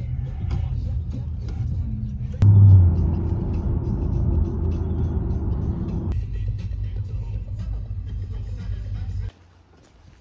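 Low, steady road and engine rumble inside a moving pickup truck's cab, with music playing along with it. The rumble jumps louder about two and a half seconds in, shifts again around the six-second mark and cuts off abruptly just before the end.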